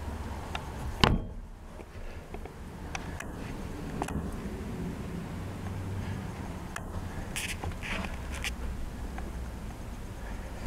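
A cupboard door in a boat cabin shutting with one sharp click about a second in, followed by a few light knocks over a low steady hum.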